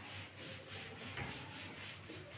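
Blackboard duster wiping chalk off a chalkboard: a faint, quick series of rubbing strokes, about three a second.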